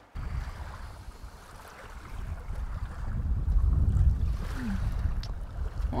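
Wind buffeting the microphone outdoors: a low rumbling rush that gets louder in the second half.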